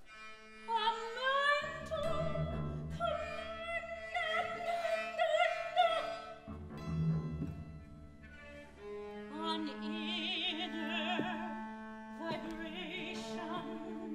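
Operatic solo singing with wide vibrato, accompanied by a chamber ensemble with low sustained cello and string notes.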